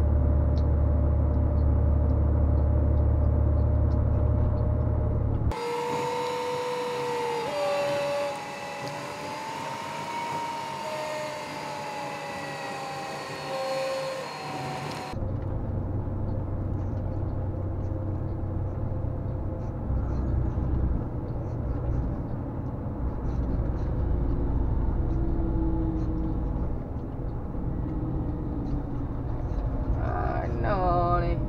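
Steady low drone of a Volvo FMX truck heard from inside the cab while driving. A little over five seconds in it cuts off abruptly and gives way for about ten seconds to a different sound of wavering, gliding pitched tones, then the cab drone returns just as suddenly.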